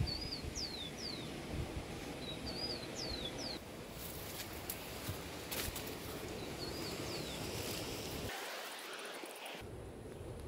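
A small songbird singing a short phrase three times, each a brief twitter followed by one or two quick falling whistles, over a steady background of outdoor noise.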